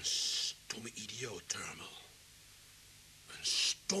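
A man's breathy, whispered voice: a sharp hissing breath at the start and another near the end, with short muttered sounds between them.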